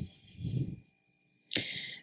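A pause in a woman's talk into a handheld microphone: a faint low sound about half a second in, then a short breath-like hiss near the end just before she speaks again.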